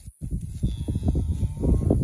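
Cattle and a person walking through tall pasture grass: irregular low thuds and swishing of hooves and feet. The sound cuts out for a moment just after the start.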